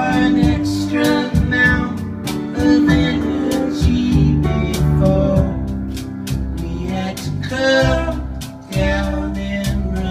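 Live band playing a passage of the song: strummed acoustic guitar over bass notes and a regular drum beat, with a wavering lead melody rising above it about three-quarters of the way through.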